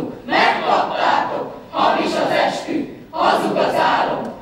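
A group of voices shouting a slogan in unison, three chants in an even rhythm about one and a half seconds apart.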